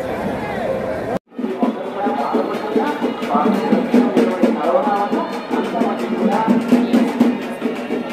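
Crowd noise, cut off by a brief dropout about a second in. After that comes music with drums and fast clicking percussion over the crowd.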